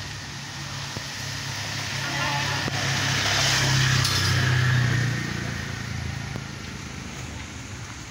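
A motor vehicle passing by: its engine and road noise build over a couple of seconds, are loudest around the middle, then fade away.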